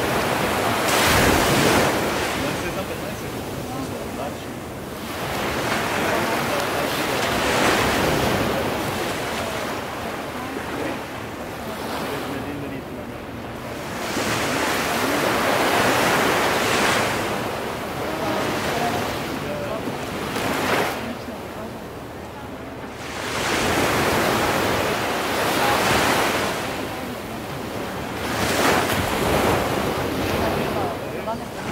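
Ocean surf washing against the shore in long swells, the rush of water rising and falling back every several seconds.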